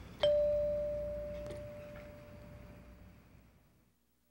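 A single chime struck once, one clear ringing tone that dies away slowly over about three and a half seconds.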